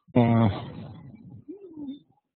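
A man's wordless hesitation sounds: a drawn-out "eh" that fades away, then a short hum that rises and falls in pitch near the end.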